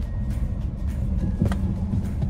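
Steady low road and engine rumble inside a moving car's cabin, with a single short click about one and a half seconds in.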